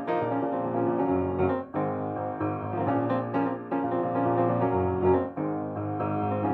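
A Mason & Hamlin AA grand piano is played with full chords over held bass notes. There are short breaks between phrases about a second and a half in and again near the end.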